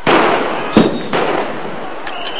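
Police firearms shooting to disperse a crowd: three sharp reports, each followed by a long echoing tail. The first and loudest comes at the very start, and two more follow close together just under and just over a second in.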